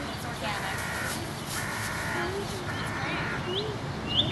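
A bird giving harsh, drawn-out calls, three of them about a second apart, with a few short higher chirps near the end.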